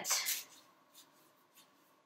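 Hands rubbing and kneading a bare foot: soft skin-on-skin rubbing, loudest at the very start, then two faint brief rubs about a second in and half a second later.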